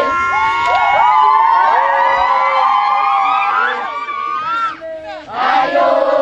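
Crowd of many voices cheering and shouting together, with calls sweeping upward just before five seconds in. After a brief lull the voices swell up together again.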